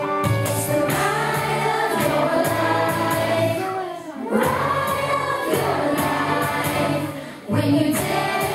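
A song with group singing over a steady bass line. It breaks off briefly twice, about four seconds in and again near the end.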